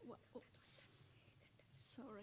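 Faint, hushed speech, partly whispered, with two short hissing sounds.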